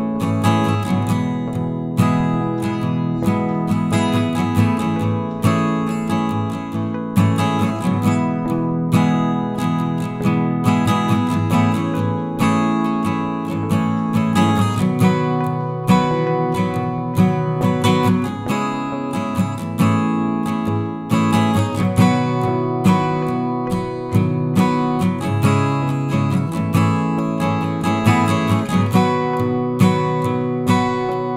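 Background music: a strummed acoustic guitar playing steadily.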